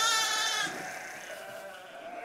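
A sheep bleating once, a trembling bleat that fades away within the first second.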